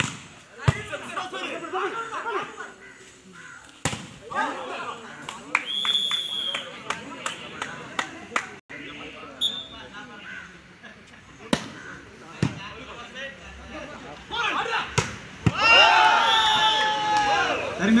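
Volleyball rally: several sharp hits of hands on the ball, with players and onlookers shouting throughout and a louder burst of shouting near the end.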